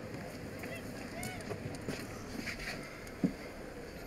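Quiet outdoor street background with one short knock about three seconds in.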